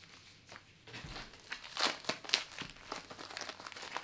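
Blue plastic bubble mailer crinkling and rustling as it is handled and pulled open by hand, in a run of irregular crackles that are loudest about two seconds in.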